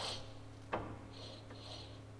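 Faint rubbing from the steering knuckle and drag link of a solid front axle being pushed through its travel by hand, with a single click about three-quarters of a second in, over a steady low hum.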